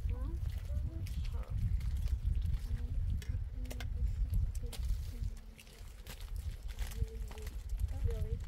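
Low rumble of wind on the microphone, with a few light clinks of a metal ladle stirring a cooking pot over a wood fire, and faint distant voices.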